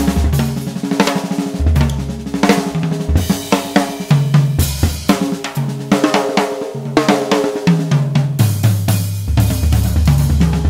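TAMA Star drum kit played with sticks in a busy solo moving around the tom-toms, with snare, bass drum and cymbal crashes. The toms ring out at clearly different pitches.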